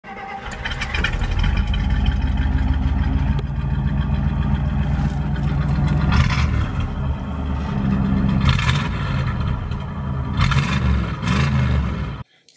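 Car engine running loudly, revved up several times so its pitch rises and falls.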